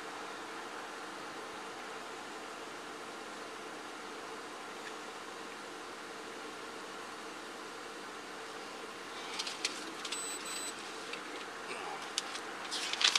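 A steady hum of an idling vehicle under a hiss. From about nine seconds in come crackles and rustles of papers being handled.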